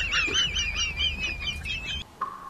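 A comic sound effect: a high-pitched warbling squeak that wobbles about four to five times a second, drifts slowly down in pitch and cuts off abruptly at the end.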